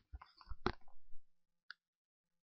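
Faint mouth clicks and breathy sounds from a lecturer pausing between sentences, then a single sharp click near the end, after which the sound drops out entirely.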